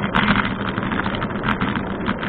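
Riding noise from a moving bicycle picked up by a bike-mounted camera: a steady low hum under a dense, irregular rattling clatter.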